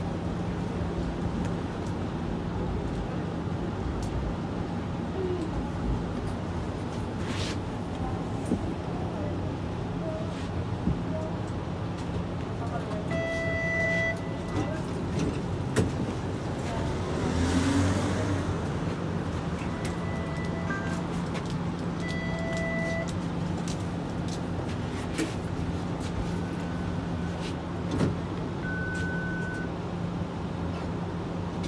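Cabin noise inside a TTC streetcar: a steady electrical hum over rolling and interior noise, with short electronic beeps twice midway, a brief hiss between them and another single beep near the end.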